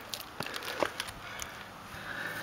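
Handling noise as a large water snake is held and pushed against a wall: a few light clicks and knocks over a faint rustle.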